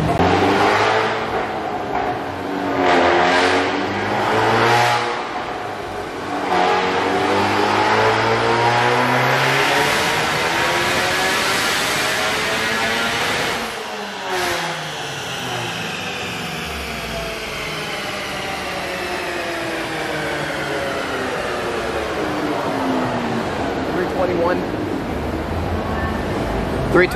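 2018 Honda Civic Type R's turbocharged 2.0-litre four-cylinder, breathing through a PRL downpipe and front pipe, making a full-throttle dyno pull. A few short revs come first, then one long climb in pitch. The throttle shuts abruptly a little past halfway, and the engine winds down in one long falling note.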